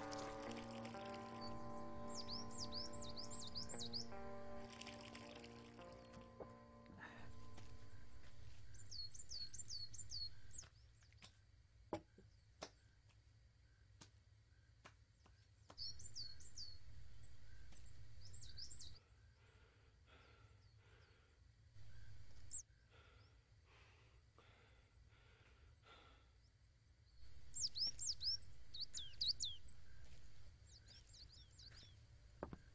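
Soft sustained music chords fading out over the first several seconds, then bird chirps in short runs of quick, high, falling notes, heard four or five times through the rest, over a faint outdoor background.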